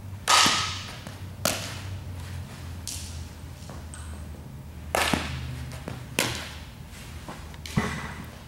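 A series of about five sharp smacks of a softball being hit off a bat and caught in a leather glove during infield fielding drills, each echoing in a large indoor hall, over a steady low hum.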